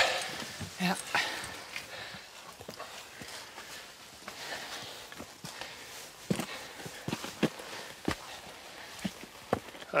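Hiking boots stepping and scraping on rock during a scramble up a steep rocky ridge: irregular single footfalls, often a second or more apart.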